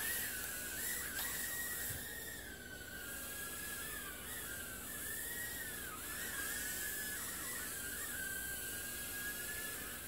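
JJRC H36 micro quadcopter's tiny coreless motors whining in flight, a high steady whine whose pitch wavers up and down continuously as the throttle and steering change.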